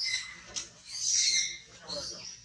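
Two high-pitched animal calls, a short one at the start and a louder, longer one about a second in.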